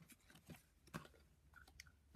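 Near silence with a few faint, short clicks and rustles of a hand of UNO playing cards being fingered through.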